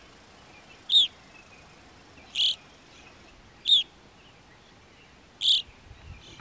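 Evening grosbeak calls: four short, sharp call notes, spaced about a second and a half apart.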